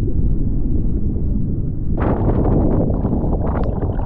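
Slab wave breaking and churning close by, a loud, deep, muffled rumble of water; about halfway through it turns sharply brighter into splashing and crackling water.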